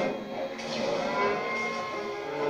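Cartoon sound effects from a television speaker: a truck horn blaring, then a cow mooing in a long held call.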